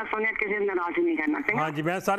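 Speech only: a man talking over a telephone line, his voice thin and cut off above the usual phone range. A second, fuller-sounding man's voice joins in for the last half second.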